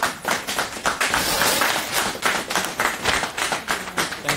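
A large paper flip-chart sheet being torn off its pad and handled: a run of irregular rips and rustles, louder than the talk around it.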